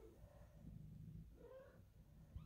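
Faint calls from a mother cat to her kittens: a couple of short, soft mews, one about halfway through and one near the end.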